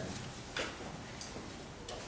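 Room tone during a pause in a talk, with a few faint clicks, the sharpest near the end.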